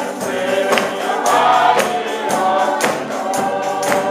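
A group of voices singing a gospel song, led by a man's voice, over a steady percussive beat of about two strikes a second.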